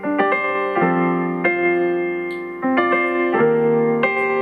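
Electronic keyboard on a piano sound playing a slow chord progression: five chords struck in turn, each held and fading slowly before the next.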